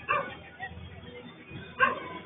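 A dog barking twice: a short bark just after the start and a louder one near the end.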